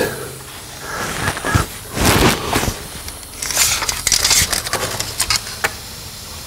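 Hands handling a tape measure: rustling and scraping, then a run of small sharp clicks near the end as it is set against the suspension to measure the ride height.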